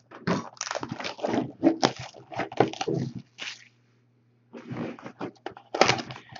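Foil wrapper of a trading card pack crinkling and tearing as it is opened by hand: a dense run of crackles, a pause of about a second a little after halfway, then more crinkling.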